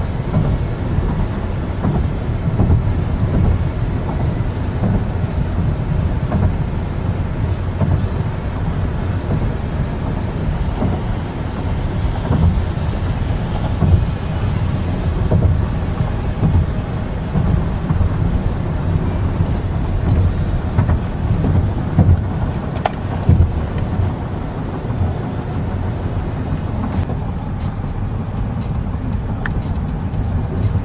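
Steady road and engine noise inside a car's cabin at highway speed, with music from the car radio playing underneath.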